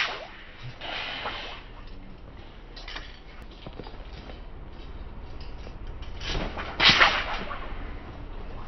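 Willow-leaf broadsword (liuyedao) swishing through the air as it is swung in a wushu routine: a few quick swishes, the loudest about a second before the end.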